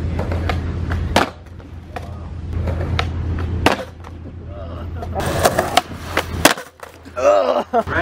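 Skateboard hitting concrete after a bailed ledge trick: a sharp crack about a second in and a couple more knocks later, over the low rumble of urethane wheels rolling on concrete that stops after a few seconds.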